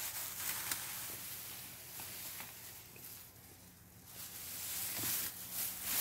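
Soft rustling of a pile of freshly pruned cannabis branches and fan leaves being handled, swelling and fading twice.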